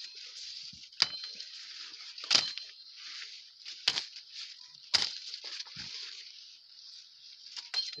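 Machete chopping the tassels off maize plants: four sharp cracks of the blade through the stalk tops within the first five seconds, the second the loudest, followed by a few fainter ticks.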